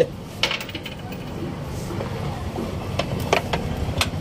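A few sharp metallic clinks of hand tools and loose parts against the car's underside during gearbox removal, over a low steady workshop rumble.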